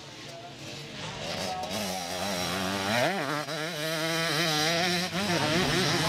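Vintage twin-shock motocross bike's single-cylinder engine being ridden hard on a dirt track, its note rising and falling with the throttle and a sharp rev about halfway through. It grows louder as the bike approaches.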